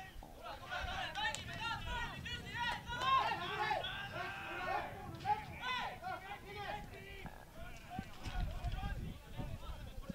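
Footballers' shouts and calls on the pitch, several voices overlapping, heard at a distance through pitchside microphones.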